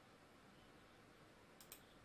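Near silence: faint room hiss, with two faint computer mouse clicks near the end as a right-click opens a context menu.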